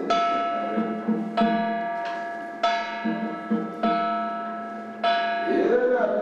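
A ritual bell struck five times at an even pace, about one stroke every 1.2 seconds, each stroke ringing out and fading before the next. A lower murmur runs underneath, and a voice comes in near the end.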